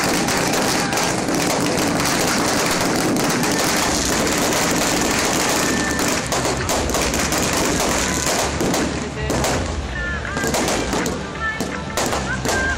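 Fireworks going off: a steady rushing hiss from spark fountains, then from about halfway a rapid run of cracks and bangs as aerial shells burst overhead, with crowd voices mixed in.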